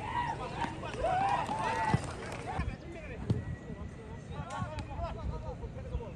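Voices shouting on a football pitch in short calls, loudest in the first two seconds and again near the end, with a few sharp thuds of the ball being kicked over a low steady rumble.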